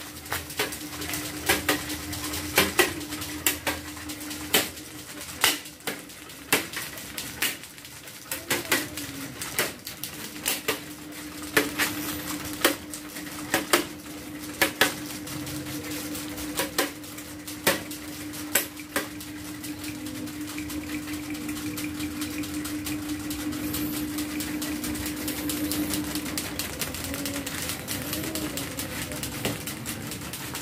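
Small hanging electric fans with plastic blades running unbalanced and wobbling, giving sharp, irregular plastic clicks and clacks over a steady motor hum. The clicking thins out after about two-thirds of the way through, leaving a steadier whirring hum.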